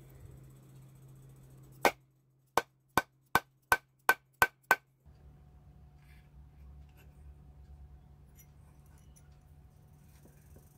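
Eight sharp hammer taps on metal in quick succession, about three a second and slightly quickening, each with a brief metallic ring: a silversmith hammering a silver piece. A faint steady low hum lies underneath.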